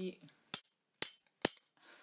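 Two long metal barbecue meat forks knocking together: three sharp metallic clinks about half a second apart.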